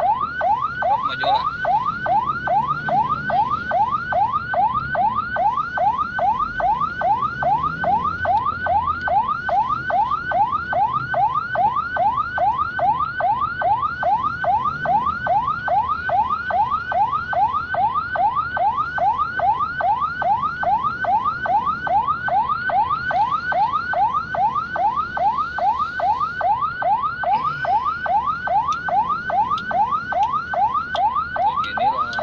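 Ambulance siren in yelp mode, a fast warble of rising sweeps about three a second, sounding steadily without a break, with faint traffic rumble underneath.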